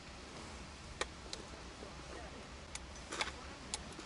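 Quiet car cabin: a low steady hum with about half a dozen short, sharp clicks scattered through it, the first about a second in and several near the end.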